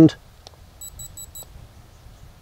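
Dog-training e-collar on its tone setting: four quick high-pitched beeps about a second in. The beep is the collar's warning cue, paired with vibration or stimulation so that the dog learns the beep means a correction is coming.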